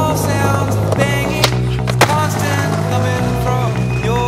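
A skateboard clacks twice on pavement, about half a second apart near the middle, over a music soundtrack with a steady bass line.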